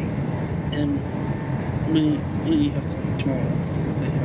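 Steady interior running noise of a GWR Class 802 train at speed, a low rumble throughout. Snatches of passengers' voices come and go over it.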